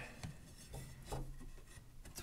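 Faint scraping and rubbing of a thin cedar strip being slid along and wedged into a gap in a wooden window frame, with a few light taps.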